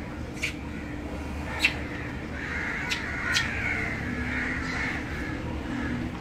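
Harsh animal calls, crow-like, from about two and a half seconds in, over a steady low hum. Four sharp clicks or knocks come earlier; the second, under two seconds in, is the loudest sound.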